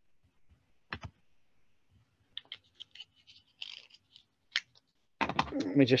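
Sparse clicks and taps of keys being pressed, with a sharper double click about a second in and scattered lighter taps after it. A man starts speaking near the end.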